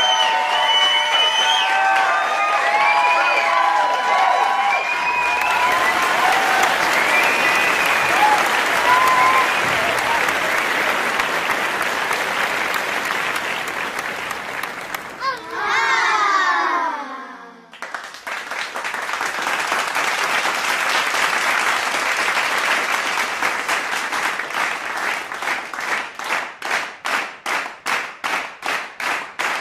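Crowd cheering and applauding, with whooping voices at first, then a steady wash of applause. Partway through a falling sweep cuts across it and the noise dips briefly. The applause then returns and turns into rhythmic clapping in unison near the end.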